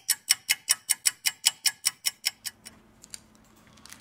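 Stopwatch ticking sound effect, about five quick ticks a second, fading out about two and a half seconds in. It marks a three-minute wait for the contact cleaner to loosen the battery adhesive.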